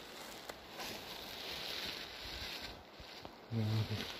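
Footsteps and rustling through low shrubby forest undergrowth as a person walks, with a few faint clicks; a man's voice begins near the end.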